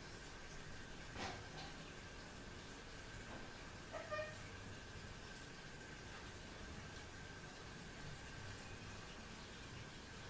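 Faint sounds of fresh lime being squeezed by hand over a glass dish of liquid jelly, against a steady high-pitched hum. There is a single light click about a second in and a short pitched sound around four seconds.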